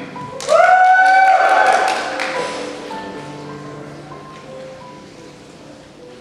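A loud whoop from someone close by, rising and held for about a second and a half, with a few hand claps, starting about half a second in. Soft background music with sustained tones carries on under it and fades.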